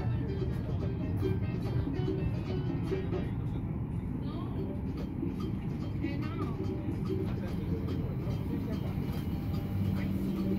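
Steady low cabin hum inside a parked Boeing 737 MAX 8, with passengers' voices faint in the background.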